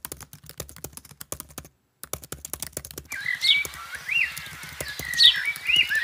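Keyboard typing sound effect: rapid key clicks with a brief break just before two seconds. From about three seconds in, bird whistles and chirps, rising and falling in pitch, sound over the clicking.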